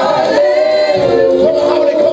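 A gospel praise team of several singers singing a worship song together through microphones, holding a long note.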